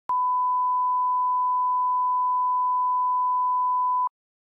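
Steady line-up test tone accompanying SMPTE colour bars: one unchanging pure pitch that starts abruptly a moment in and holds without a break.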